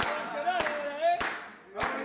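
Football supporters' terrace chant sung by a group of voices over steady rhythmic clapping, a strike about every 0.6 seconds. The singing dips briefly near the end.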